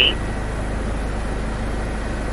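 Steady hiss over a low hum: the background noise of a police helicopter's onboard audio, engine and rotor noise carried through the intercom.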